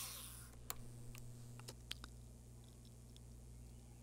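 Quiet room tone with a steady low hum and a handful of faint, short clicks in the first two and a half seconds; a hiss fades out at the very start.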